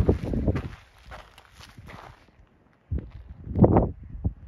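Footsteps scuffing on a gravelly dirt trail, irregular, dying away about two seconds in, with another louder cluster of scuffs near the end.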